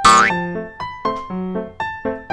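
Bouncy background keyboard music of short plucked notes, with a brief sound effect that sweeps sharply upward in pitch right at the start.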